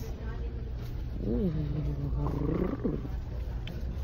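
A person's voice making drawn-out, wordless vocal sounds: one that swoops up and down in pitch and is held for about a second, starting about a second in, then a shorter one just after, over a steady low hum.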